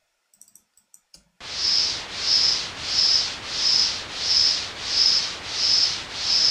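Synthesized white noise from Ableton's Operator, its filter resonance automated in a zigzag, so the hiss swells and fades about eight times, with a high whistle-like resonant peak at each swell, roughly three every two seconds. Before it starts, about a second and a half in, come a few soft mouse clicks.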